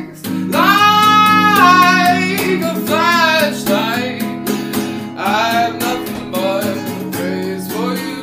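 Lo-fi folk song: guitar chords held under a singing voice that slides between long sustained notes, the voice coming in just after a brief dip at the start.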